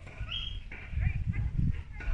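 Footsteps on a wooden boardwalk: a run of low, hollow thuds from the planks, strongest in the second half.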